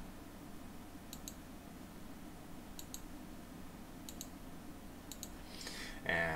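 Faint clicks of a computer mouse used while editing code: four pairs of quick clicks at irregular intervals of a second or so.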